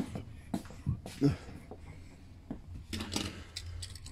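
Scattered light clicks and small knocks of die-cast toy cars being handled and set down on a wooden table, a few closer together near the end.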